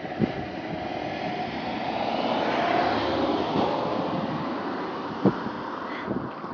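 Rushing engine noise of something passing by, swelling to a peak about halfway through and then fading away.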